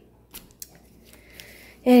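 A few faint clicks and crinkles of plastic packaging being handled, as a clear cling stamp in its plastic sleeve is picked up.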